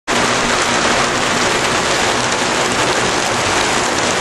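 Steady rain, with water streaming off a gutter where two gutter sections join: the joint is leaking and letting water spill over instead of down the downspout.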